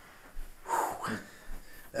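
A man's short, breathy vocal sounds that are not words, a few quick exhalations with the strongest a little under a second in.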